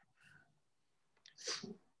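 A single short sneeze about one and a half seconds in, with near silence around it.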